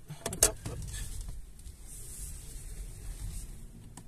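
Faint, steady low hum inside the cabin of an MG5 electric estate creeping slowly in reverse, with a few soft clicks just after the start.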